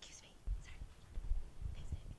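Faint whispering in a hall, with a few soft low thuds.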